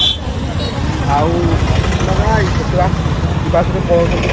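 Busy city street: a steady low rumble of traffic, with scattered voices of people talking close by.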